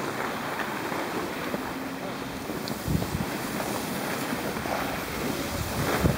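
Steady rushing of wind over the camera microphone and the hiss of sliding on snow during a downhill run, with a few low bumps about three seconds in.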